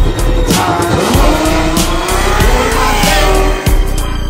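Chevrolet Camaro launching hard from a standing start, its engine revving up in pitch, dropping briefly at a gear change and climbing again as it pulls away.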